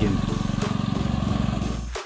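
An engine running steadily, a low hum with a fast, even pulse that fades away near the end.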